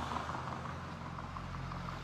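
Road traffic passing close by, a car and a small lorry driving past with a steady low engine and tyre noise.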